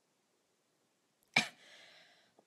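Near silence, then about a second and a half in a single sharp cough from a woman with a sore throat, trailing off into a short breathy exhale.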